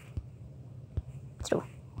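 A few faint, sharp taps of typing on a phone's on-screen keyboard.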